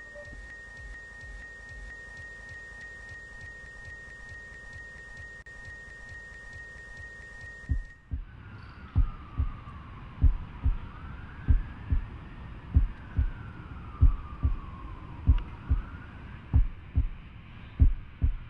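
Electronic soundtrack effects: a steady high beep tone over hiss for about eight seconds. It then gives way to regular low thumps, about one and a half a second, under slow whistling sweeps that rise and fall in pitch.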